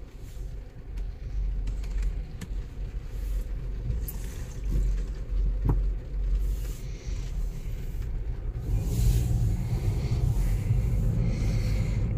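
Mazda 6 heard from inside the cabin while driving off slowly: a steady low engine and road rumble that builds a little over the last few seconds as the car picks up speed.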